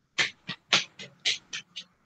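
An animal calling in a quick, irregular series of about eight short, sharp calls.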